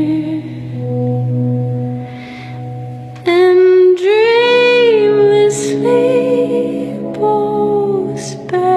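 A woman singing a slow song in long held notes over soft, sustained accompaniment; her voice comes in louder about three seconds in.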